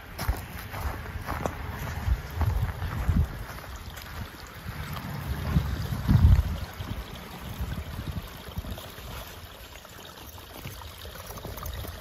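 Wind buffeting the microphone: a low rumble that comes and goes in gusts, strongest about six seconds in.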